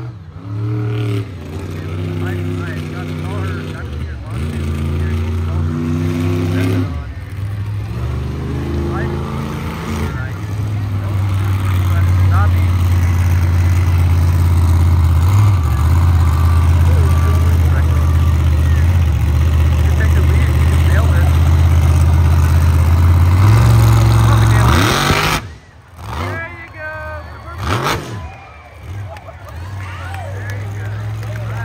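Classic 1979 Ford-bodied monster truck's big engine revving in several pushes, then held at high revs for about fifteen seconds through a wheelie, dropping off suddenly about 25 seconds in.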